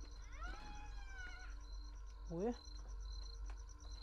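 A single long animal call, about a second long, rising at first and then held and fading slightly. Insects chirr steadily and faintly underneath.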